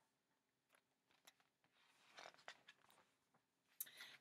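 Near silence, with a few faint clicks and a soft rustle a couple of seconds in, as the pages of a picture book are handled and turned.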